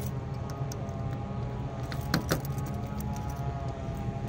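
Keys jangling on a ring while a key scrapes and clicks against a car's boot lock, with a couple of sharp clicks about two seconds in; the key is being tried upside down. A steady low hum runs underneath.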